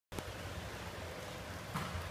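Faint steady background noise: a low hum under a light hiss.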